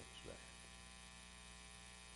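Near silence with a steady low electrical hum.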